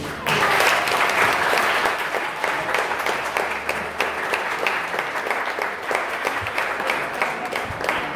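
Audience applauding, many hands clapping, starting a moment after the last note of the tune and easing off slightly toward the end.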